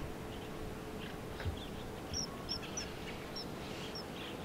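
A bird calling outdoors: faint chirps at first, then a run of short, sharp high-pitched chirps repeated every third to half a second from about two seconds in. A steady low hum runs underneath.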